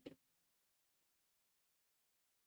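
Near silence, with a few faint, short clicks of pool balls as a shot is played.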